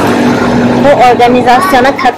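A steady motor-vehicle engine hum that stops about a second in, after which a woman talks.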